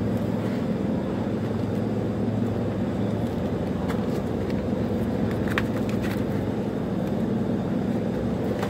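Steady low hum of a supermarket's refrigerated meat display case, its fans and refrigeration running without change. About five to six seconds in, a few faint clicks and crinkles as a gloved hand handles a plastic-wrapped package of ribs.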